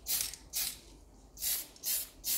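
Aerosol spray can of surfacer hissing in three short bursts as primer is sprayed onto a resin model. There is a quiet gap between the first burst and the last two.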